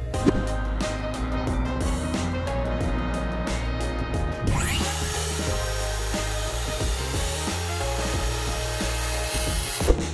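Background music with a steady beat, over which a DeWalt cordless circular saw cuts through a plywood panel from about halfway through, a steady whining rip until just before the end.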